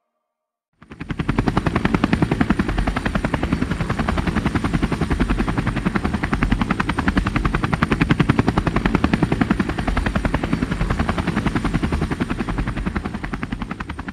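Helicopter rotor chopping: a rapid, steady thudding with a thin high whine above it. It cuts in suddenly about a second in and tapers off at the end.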